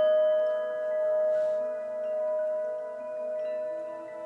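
A singing bowl ringing on after a single strike, its tone fading slowly with a gentle wavering swell about once a second.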